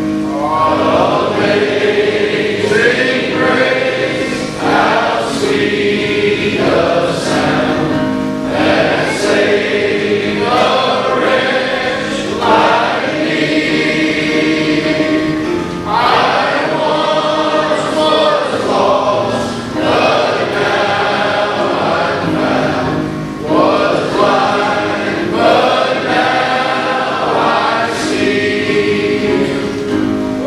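A large men's choir singing a gospel song in phrases a few seconds long, over sustained accompaniment.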